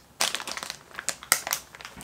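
A plastic Cheetos snack bag crinkling in a run of irregular crackles as a hand reaches into it.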